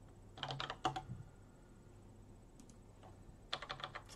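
Computer keyboard keys tapped in two quick runs: a burst of keystrokes about half a second in, and another near the end.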